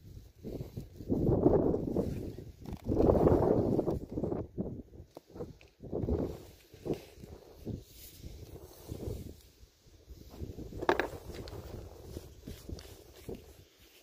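Handling noise from slicing a block of ballistic gelatin with a knife: irregular rustling and scraping of gloves, clothing and gel, heaviest in two spells in the first few seconds, with a sharp tap about eleven seconds in.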